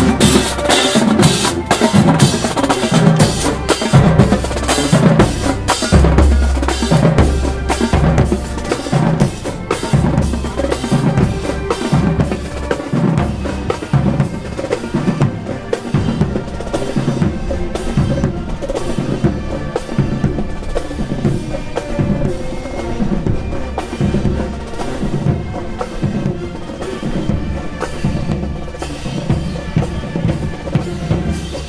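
College marching band drumline playing a cadence: snare drums and crash cymbals over bass drum in a steady beat, growing a little fainter in the second half.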